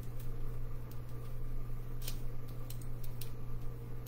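Cardstock and sticky tape being handled at close range: a scattering of small irregular clicks and crinkles as tape is pressed onto a paper ring, over a steady low hum.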